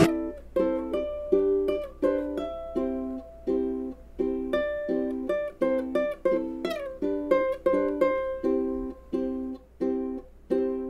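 Ukulele playing an instrumental passage of a pop song: plucked chords struck about two to three times a second, with higher melody notes over them and no singing. A faint steady low hum runs underneath.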